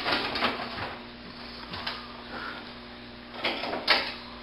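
Light metal rattling and scraping as the unit's drum base is hinged up and set in its folded position, with a louder clatter near the end. A faint steady hum lies underneath.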